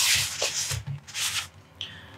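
Hands unfolding a fold-out Blu-ray disc case, its panels rubbing and sliding against each other and the hands in a few swishes that die down after about a second and a half.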